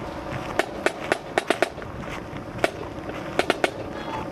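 A marching drum beating a cadence for troops on parade: sharp, separate strikes in quick groups of two or three.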